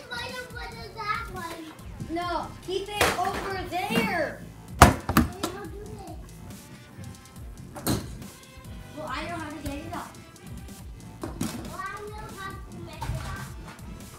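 Children's voices talking and calling out in a small room, with two sharp knocks about five and eight seconds in, the first the loudest sound.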